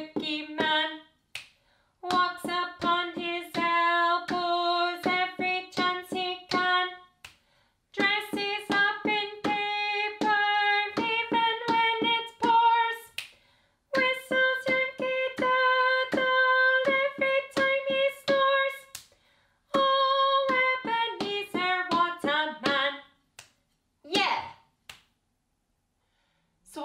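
A woman singing a children's counting song unaccompanied, in short phrases with brief pauses between them. A drumstick taps steadily on the floor along with the words, finger clicks fall in the rests, and there is a short shout near the end.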